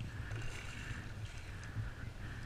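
Water lapping against a kayak's hull, with an irregular low wind rumble on the microphone.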